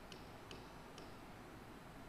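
Three faint clicks in the first second over quiet room hum, typical of a computer mouse's scroll wheel scrolling a document.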